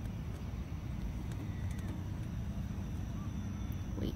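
Steady low outdoor rumble with no distinct source, carrying a couple of faint short chirps.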